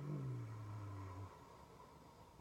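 A woman's low hummed "mmm" that slides down in pitch over about a second and a half, then stops.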